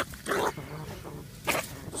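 A large bandicoot rat caught in a wire cage trap, hissing twice in short bursts.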